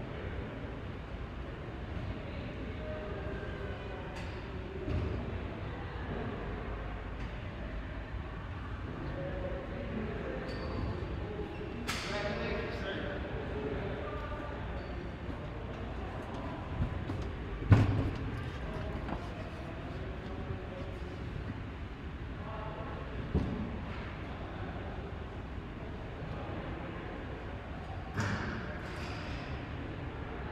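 Faint, indistinct voices echoing in a large church interior over a steady low rumble, broken by a few knocks and thuds, the loudest about two-thirds of the way through.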